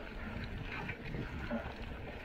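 Mountain bike rolling over a dirt trail: tyres crunching on dirt and small rattles of the bike, over a steady low rumble of wind on the microphone.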